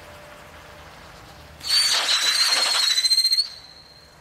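Firework fountain spraying sparks with a faint hiss. About one and a half seconds in, a loud, high whistle starts, holds one pitch for nearly two seconds with a fast flutter toward its end, then cuts off sharply.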